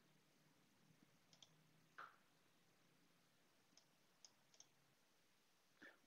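Near silence broken by about five faint, scattered computer mouse clicks.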